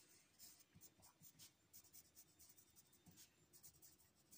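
Faint scratching of a pencil writing on paper, a run of short strokes.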